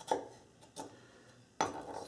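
Chef's knife cutting through thin potato slices onto a wooden cutting board: three sharp knife contacts with the board, a little under a second apart, as the slice ends are trimmed to points.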